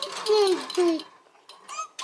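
A metal spoon clicking against a glass mason jar as a thick oil-and-butter mixture is stirred, with a toddler's high-pitched babbling over it in the first second and a brief squeal near the end.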